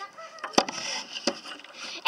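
A few sharp knocks and clicks, with rustling, as the recording camera is handled and set down on a table top; faint voices in the background.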